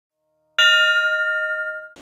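A single bell-like ding, struck about half a second in and ringing down for over a second before it cuts off.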